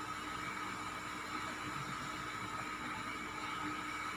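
Steady background hiss with a faint constant hum and no distinct events: room tone.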